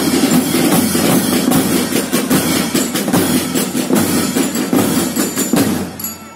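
Drums of a school marching drum band playing a fast, dense, continuous beat. The beat starts abruptly and falls away near the end.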